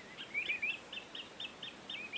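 A bird chirping faintly: a quick, even run of short, high notes, about five a second.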